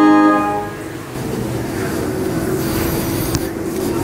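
A church organ's last chord is released about half a second in and dies away. After it comes a steady low hum with a hiss under it.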